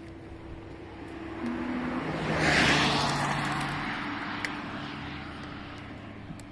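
A car passing by on the road, its tyre and engine noise swelling to a peak about two and a half seconds in, then fading away.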